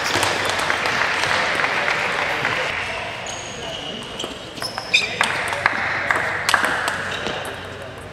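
Table tennis rally: the celluloid-type ball clicks sharply off bats and table in quick succession over the second half. Indistinct voices murmur in the hall before it.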